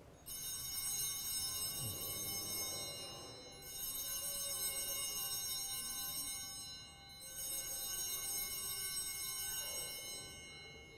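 Altar bells rung three times for the elevation of the chalice at the consecration, each ring a cluster of bright, high bell tones lasting about three seconds.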